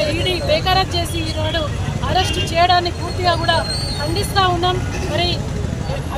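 Raised voices shouting protest slogans in a high, strained pitch, over a steady low rumble of street traffic.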